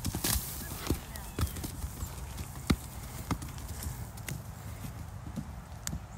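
Hoofbeats of a young Clydesdale foal running and playing on packed dirt scattered with hay: irregular thuds and knocks, with one sharper knock about halfway through.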